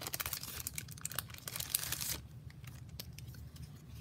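Clear plastic packaging of a sticker book being torn open and crinkled by hand, with irregular rustling and small crackles, busiest in the first two seconds and then thinning to occasional crinkles.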